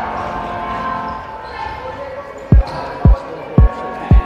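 A basketball bouncing on a wooden gym floor: three sharp, loud thumps about half a second apart in the second half, over the steady noise of the hall.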